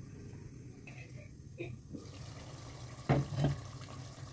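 Chicken curry cooking down in a covered clay handi, a faint steady hiss of simmering, sizzling masala. Just after three seconds in, two sharp knocks from the clay lid being lifted.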